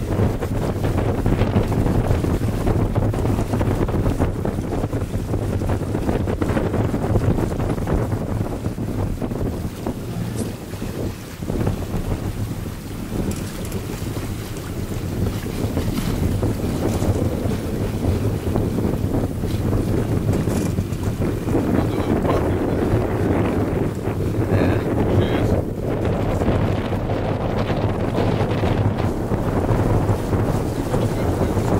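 Steady wind noise buffeting the microphone over water rushing along the hull of a Catalina 320 sailing yacht under sail.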